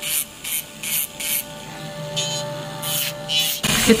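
Electric nail drill running steadily as it files gel polish off a fingernail, heard under background music with a regular beat.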